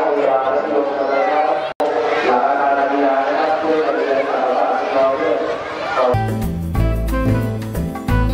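A crowd of children chattering and calling out all at once, cut off for an instant about two seconds in. About six seconds in, music with a heavy bass beat takes over.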